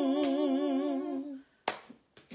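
A woman humming one long held note with a wide vibrato, unaccompanied. The note fades out about a second and a half in, and a brief sharp noise follows near the end.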